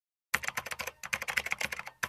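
Rapid keystrokes on a computer keyboard, used as the sound of text being typed onto the screen, with a brief pause about a second in.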